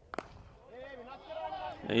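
A cricket bat strikes the ball once, a single sharp crack just after the start, followed by faint voices.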